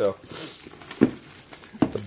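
Clear plastic shrink-wrap crinkling as it is peeled and torn off a cardboard box, with a sharp crackle about halfway through and another near the end.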